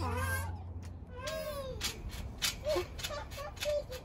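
A toddler's wordless high-pitched squeals: one longer rising-and-falling call about a second in, then several short ones. A low steady hum runs underneath for the first second or so, then stops.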